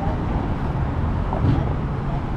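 City street traffic at a busy intersection: a steady low rumble of passing cars' engines and tyres.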